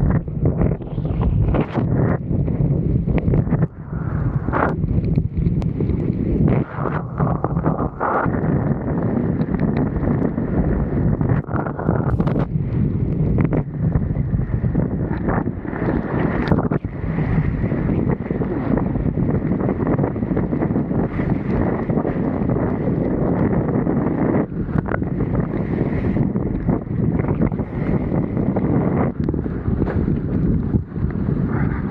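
Strong wind buffeting the microphone of a kitesurfer's action camera as he rides a kiteboard over choppy sea: a loud, steady low rush broken by frequent short knocks.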